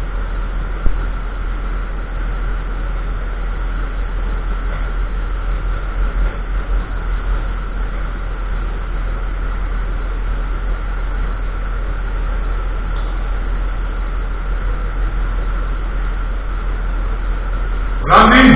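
Steady low hum under an even hiss, with a faint constant whistle-like tone above it and one sharp click about a second in.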